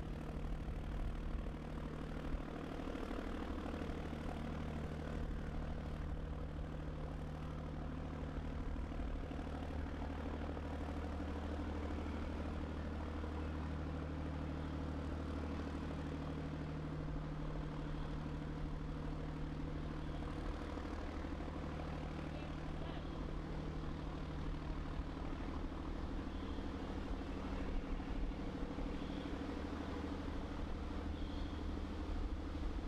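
A steady low mechanical drone, like an engine running, made of several held pitches that shift slightly every few seconds.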